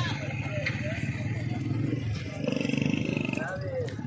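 A single livestock bleat, a deep wavering call lasting under a second, comes about two and a half seconds in. Under it runs a steady low rumble with faint distant voices.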